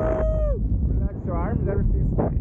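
A person's long held yell slides down in pitch and stops about half a second in. Short whooping calls follow near the end. Wind buffets the microphone throughout.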